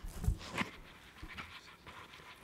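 Handling noise on a live microphone as it is passed between panelists: a thump and rustle in the first half-second, then faint scattered clicks and rubbing.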